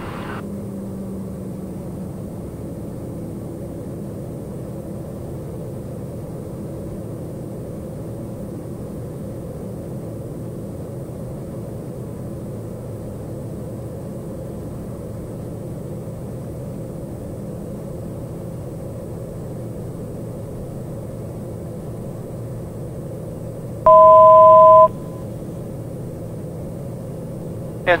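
Steady drone of the TBM 910's Pratt & Whitney PT6A turboprop engine and propeller, heard inside the cockpit in flight. Near the end a loud electronic tone of two notes sounding together lasts about a second.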